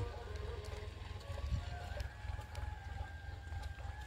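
A tractor with a tiller running in the distance: a low steady rumble with a faint, even whine above it.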